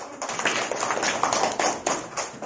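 A group applauding: many hands clapping at once, starting suddenly and thinning out near the end.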